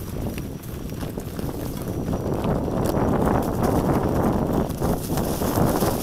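Mountain bike rolling over a rough trail covered in dry leaves, with tyre noise and the rattle of the bike over bumps, growing louder about two seconds in.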